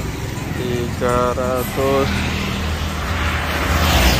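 Road traffic: a steady low engine hum, with the rushing noise of a passing vehicle swelling towards the end. A voice speaks briefly about a second in.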